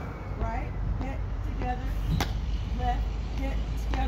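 A woman's voice making short, quiet vocal sounds while she walks through the dance steps, over a steady low rumble. A single sharp click comes about two seconds in.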